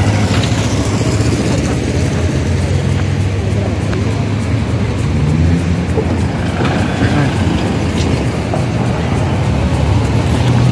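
Road traffic: motorcycle and car engines running close by, a steady low rumble with one engine rising in pitch about halfway through.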